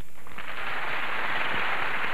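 Audience applauding, rising quickly a fraction of a second in and holding steady.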